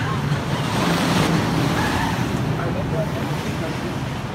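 A wooden roller coaster train running along its track: a rumbling roar that swells about a second in and then eases slightly.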